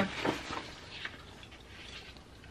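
Sheets of paper rustling briefly as they are flipped around and held up, followed by low room noise with a faint tap about a second in.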